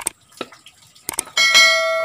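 Subscribe-button animation sound effect: a few short mouse clicks, then about one and a half seconds in a bright notification-bell ding that rings on, slowly fading.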